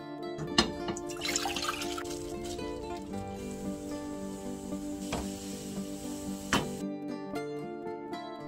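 Liquid being poured into a pot: kimchi juice poured from a bowl over cabbage kimchi in broth, a hissing splash that stops suddenly not long before the end, with three sharp clinks, one near the start and two in the second half. Background music plays throughout.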